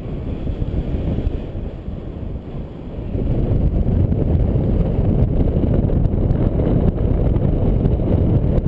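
Wind noise from the airflow over the camera microphone of a paraglider in flight: a low, gusty buffeting that grows louder about three seconds in.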